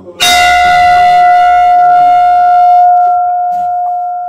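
Large hanging temple bell struck once by hand and left ringing: one sharp strike just after the start, then a loud, long, steady ring. Its higher overtones fade within about three seconds while the deep hum holds.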